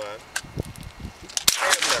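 A single sharp shot from a scoped rifle about one and a half seconds in, followed by a short tail.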